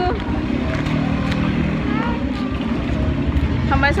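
A motor vehicle engine running close by on a busy street, a steady low rumble with faint voices in the background.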